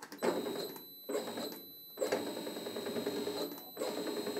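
A hand-operated rebar bender bending a ribbed steel bar: metal grinding and creaking against the plate and pin in several pushes of the lever with short breaks between them, with a thin high squeal of metal on metal running through most of it.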